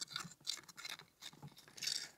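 Faint, irregular scratching and scraping of a pointed tool being worked through coarse, gritty bonsai substrate in a pot, loosening the soil around the roots.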